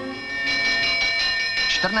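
A bell ringing with a run of metallic strikes over steady high tones, sounded as the start signal for the horse race.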